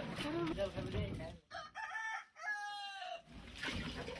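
A rooster crowing once, a drawn-out crow in two parts starting about a second and a half in, after a few moments of people talking.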